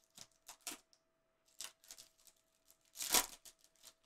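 Baseball card pack wrapper being handled and torn open by gloved hands: a few light crinkles and clicks, then a louder rip about three seconds in.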